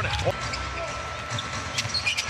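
Basketball game sound from the arena: crowd murmur with a basketball bouncing on the hardwood court, a few sharp knocks near the end. A thin steady tone sits over it for about a second and a half.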